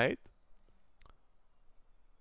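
Near silence with a single short, faint click about a second in, from the pen and paper sheet being handled on the desk.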